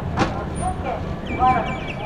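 Passenger train rolling slowly out of a station, heard from its open coach door: a steady low rumble with a single sharp clack a moment in. A rapid series of short high chirps comes in after the halfway point.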